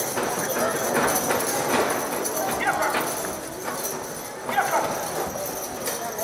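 Team of draft horses in harness pulling a weighted sled over dirt: clip-clopping hoofbeats and rattling harness and chains, with short shouted calls over it twice.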